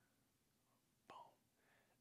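Near silence: room tone, with one short softly spoken word about a second in.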